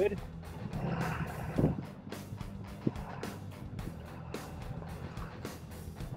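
Inside a vehicle driving slowly on a dirt and gravel lane: a steady low engine and road hum, with scattered light clicks and a few sharper ticks from the tyres on the rough surface.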